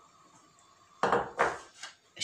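A small glass bowl knocking and scraping on a metal tray as it is handled: three short clatters in the second half, the first the loudest.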